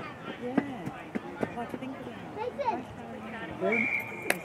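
Scattered sideline voices and chatter, then near the end one short, steady blast of the referee's whistle.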